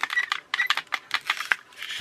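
Hard plastic parts of a toy boat hull clicking and rattling as they are handled and turned over, a quick irregular run of light clicks.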